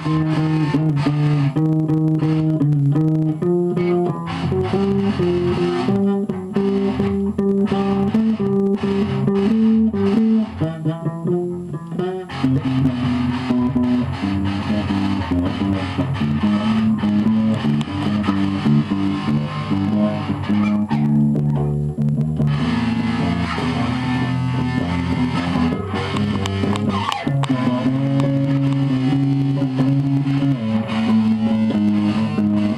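Amplified electric guitars played in a loose, unstructured jam: low held notes changing every second or so, with a quick run of notes about ten to twelve seconds in.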